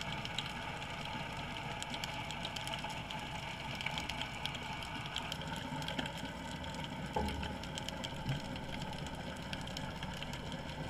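Underwater ambience picked up by a submerged camera: a steady hiss and low rumble with many scattered faint crackling clicks, and a brief low thump about seven seconds in.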